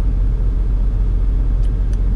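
Volvo semi truck's diesel engine idling, a steady low rumble heard inside the cab.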